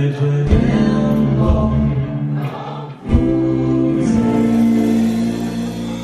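Live band with electric guitars, bass and drums playing a song, with sung vocals held over long notes and a brief dip about halfway through.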